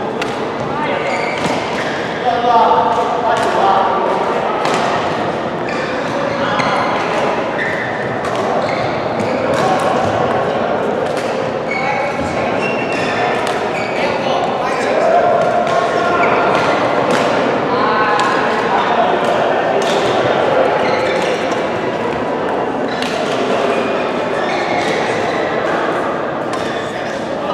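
Badminton rackets hitting a shuttlecock in rallies: a string of sharp pops at irregular intervals. Players' voices and chatter echo around the large sports hall.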